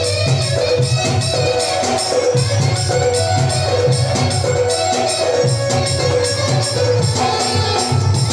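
Loud festive band music: a steady drum beat under a short melodic phrase repeated over and over.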